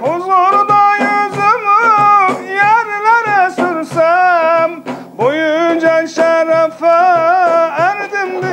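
A man singing a Turkish ilahi in long, ornamented melismatic phrases with a wavering pitch, over a steady beat of hand-struck frame drums. He breaks off about five seconds in and starts a new phrase.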